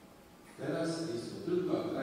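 A man's voice speaking in narration. It comes in about half a second in, after a short lull.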